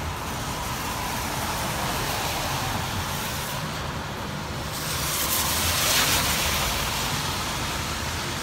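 Road traffic on a wet street: a steady wash of tyre noise, swelling into the loud hiss of a car's tyres on wet pavement as it passes, loudest about six seconds in.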